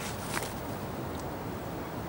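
Steady low background hiss with a brief rustle about a third of a second in, from hands handling a plastic PVA-bag loading tube and bag of micro pellets.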